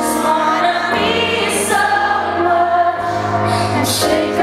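A woman singing live, holding long notes, over chords from a Roland RD-300GX stage keyboard. The low notes of the chords change about a second in and again near the three-second mark.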